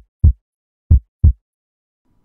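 Heartbeat sound effect: short low thumps in double beats, one pair about every second, the last pair about a second and a half in.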